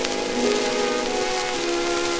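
Orchestra playing sustained chords in an instrumental passage of a 1922 acoustic-era Edison Diamond Disc recording, over a steady surface hiss with faint crackle.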